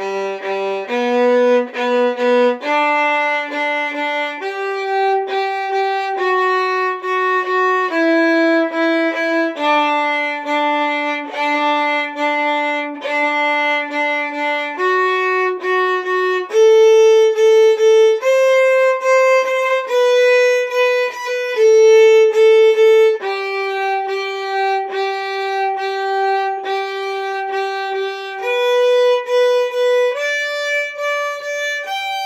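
Solo violin, bowed, playing a G major arpeggio exercise: a steady run of detached notes climbing and falling through the chord, several strokes on each pitch. It starts on the low open G string.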